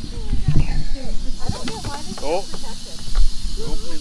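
Prairie rattlesnake rattling: a steady high buzz that strengthens about one and a half seconds in and keeps going, the snake's defensive warning. Voices and laughter sound over it.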